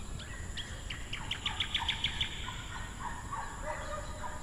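Birds chirping outdoors: a quick run of about eight repeated high chirps starting about a second in, followed by several lower, shorter calls.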